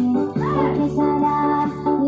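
Dance-workout music: a song with high singing over held bass notes that change pitch shortly after the start.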